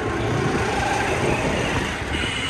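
Steady noise of riding along a street in a moving vehicle: an even rush of engine, tyre and wind noise with no single event standing out.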